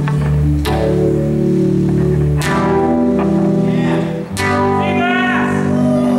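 Live rock band playing through amplifiers: electric guitars and bass hold sustained chords over drums. The chords change about every two seconds, each change marked by a cymbal crash.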